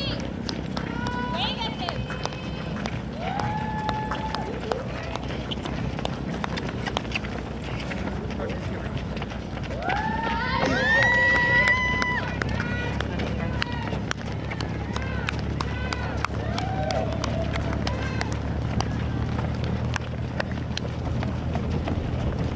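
Runners' footsteps patter on asphalt while people call out at intervals, with one long, loud held shout about ten seconds in. A steady low rumble sits underneath and grows louder in the second half.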